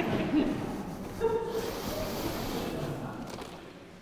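Room noise in a hall with faint, brief voices, one short voice about a second in, fading toward the end.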